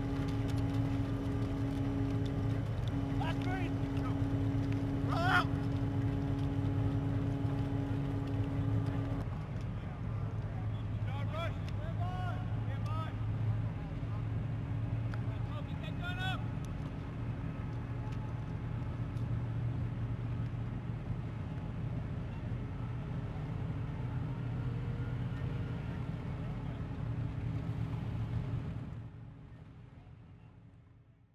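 Amphibious assault vehicle's diesel engine running steadily, a low drone with a held higher tone over it that drops away about nine seconds in. Short shouted voices come through a few times, and the sound fades out near the end.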